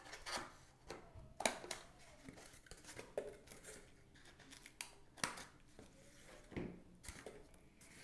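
Scissors snipping through corrugated cardboard: a series of short, separate cuts, each a quiet sharp snip, spread a second or so apart.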